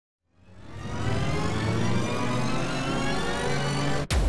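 Intro sound-effect riser: a dense noisy build-up with rising tones, fading in over the first second and holding loud until it cuts off right at the end.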